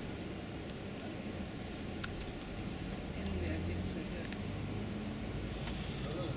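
Steady low drone of a tour coach's engine and road noise heard from inside the cabin, with a single sharp click about two seconds in.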